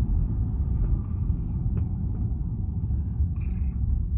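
Steady low rumble of road and engine noise inside a moving car's cabin, with the windows rolled up.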